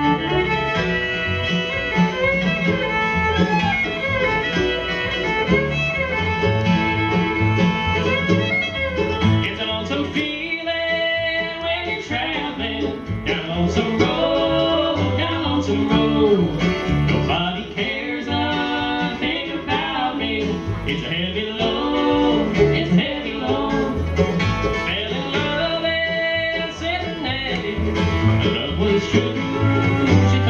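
Live bluegrass string band playing: fiddle, mandolin, acoustic guitar and upright bass. The fiddle is bowing at the start and again near the end.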